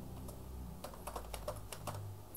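Computer keyboard being typed on: a quick run of keystrokes starting about a second in, as a word is typed.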